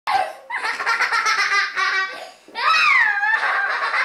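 High-pitched laughter in quick pulses, then a long squealing laugh whose pitch falls and rises again about two and a half seconds in.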